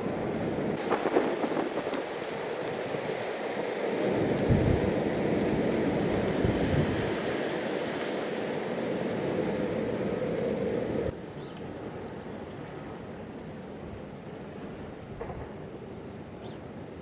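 Blizzard wind blowing on the microphone, with low rumbling gusts in the middle. It drops abruptly to a quieter, steady wind about eleven seconds in.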